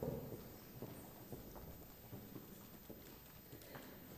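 Footsteps of several people in hard-soled shoes walking on a wooden stage floor, a scatter of irregular knocks, with one louder knock right at the start.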